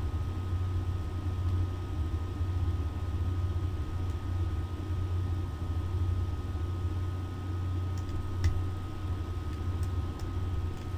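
Steady low hum with light hiss of background room noise, including a faint thin steady tone. One or two faint short clicks come near the end.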